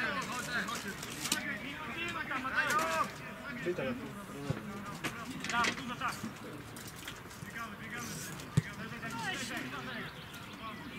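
Indistinct shouting of football players on the pitch, busiest in the first three seconds, with a single sharp thump near the end.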